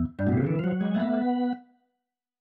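Sampled organ from the Kontakt 5 software synth, played through RMS Keyboards over a virtual MIDI port. It holds a sustained organ sound for about a second and a half, then cuts off suddenly. Hearing the organ instead of the default piano shows the external MIDI routing is working.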